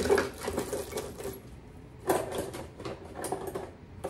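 Small items in a kitchen drawer rattling and clattering as they are rummaged through by hand. It comes in two spells of quick rattling, the first at the start and the second about two seconds in.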